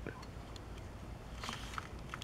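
Faint handling of a plastic toy voice box, with a few light clicks as its button is pressed. No voice plays: the box does not work, which the owner puts down to old batteries.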